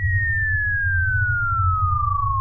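A single pure whistle-like tone sliding slowly and steadily down in pitch, over a steady low rumble.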